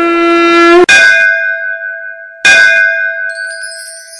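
A long blown conch-shell (shankh) note that bends up slightly and cuts off about a second in. Two bell strikes follow about a second and a half apart, each ringing out and fading. Near the end a high shimmering chime run rises.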